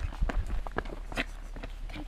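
Running footsteps on a dirt hiking trail, quick steps at about four a second.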